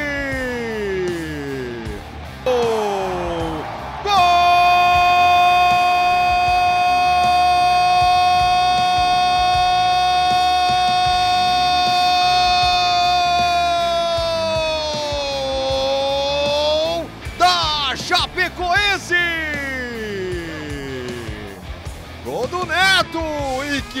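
A football commentator's long drawn-out goal cry, held on one pitch for about twelve seconds before dropping away, after a few shorter falling shouts, over background music.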